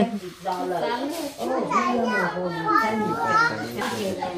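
Only speech: people talking, with what may be a child's voice among them.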